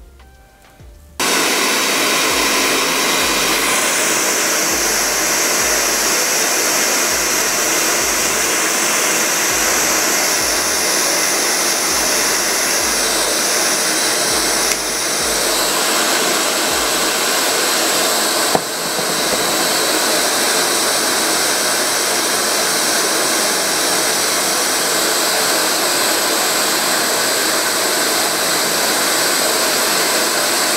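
Handheld hair dryer with a concentrator nozzle, switched on about a second in and blowing steadily, with two brief dips midway. It is blowing hot air to dry and melt lace-wig glue at the hairline.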